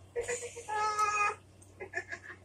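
A cat meowing: one drawn-out meow lasting about a second.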